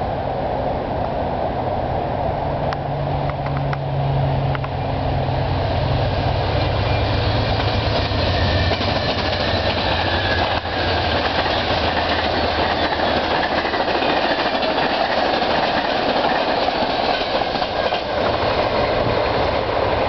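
Amtrak California Zephyr passing at speed. The GE Genesis diesel locomotive's engine drone grows loud a few seconds in as it draws level and goes by. It is followed by a steady rush of wheel and rail noise, with some clicks, as the bi-level Superliner cars roll past.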